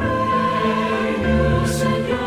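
Mixed choir singing a Korean praise song in parts over an instrumental accompaniment, with held chords and a bass line that steps to a new note about a second in.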